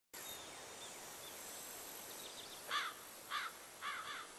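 A bird calling: a short call repeated about every 0.6 s, three times in the second half, over faint outdoor background noise with a few faint high chirps in the first second or so.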